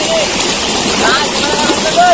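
Steady rushing noise of running water, with short, high pitched calls scattered over it.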